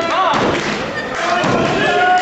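A thud on the wrestling ring's canvas mat as a wrestler moves on it, with people's voices shouting around the ring.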